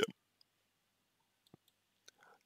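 A pause in a man's speech: near silence with a couple of faint, short clicks.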